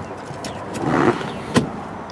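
Second-row captain's chair being handled by its release lever: a rustle of fabric and seat parts that swells about a second in, then a single sharp click of the latch.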